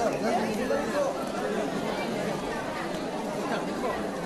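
Many overlapping voices: a room full of students chattering at once, with no single clear speaker.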